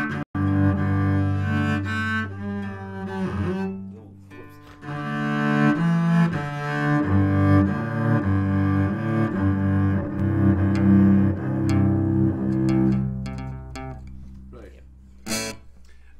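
String instruments tuning up: held notes and chords sounded to check pitch against a reference A, changing every second or two, then fading out near the end, followed by a sharp click.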